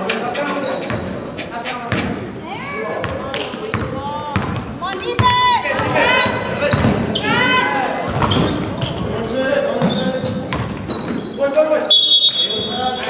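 A basketball dribbling on a hardwood gym court during play, with repeated sharp bounces, sneakers squeaking on the floor and players' voices in the large hall.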